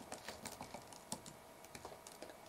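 Faint typing on a computer keyboard: a run of quick, irregular keystrokes.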